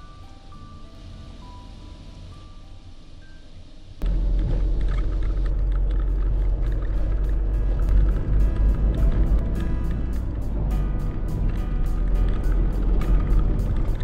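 Background music: a soft melody of single bell-like notes, then about four seconds in a sudden switch to a louder track with a steady beat. Under the louder part runs a low steady rumble of a vehicle driving.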